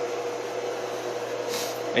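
Pool pump motor running with a steady hum and rush of noise, not yet primed.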